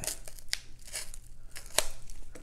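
Scissors cutting into a padded paper bubble mailer: a few sharp snips, the loudest near the end, as the envelope is opened.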